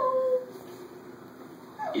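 A short, high-pitched cry that rises and then holds for about half a second, like a small whine, followed by a quieter stretch with a faint steady hum.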